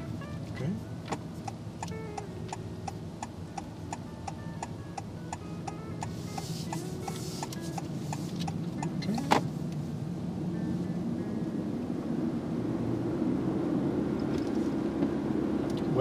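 Honda car's turn-signal indicator ticking at an even pace, a few ticks a second, for about eight seconds while taking a roundabout. It stops with a sharper click at about nine seconds in, after which the car's engine and road noise in the cabin rise as it drives off.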